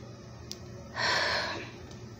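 A person's breathy sigh, about a second in and lasting about half a second, with a faint click just before it.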